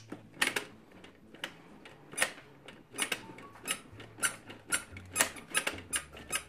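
Plastic udder of an IMC Toys La Vaca Loca milking-cow game being pulled over and over, giving an irregular run of sharp plastic clicks. This is the reset step, pulling the udders until the cow's eyes pop out.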